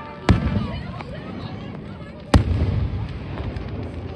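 Aerial firework shells bursting: two loud booms about two seconds apart, each trailing off in a low echo.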